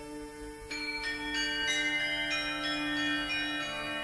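A set of small tuned bells struck one note after another, about eight or nine strikes with long ringing tones, over a held drone in medieval music. The bells begin under a second in.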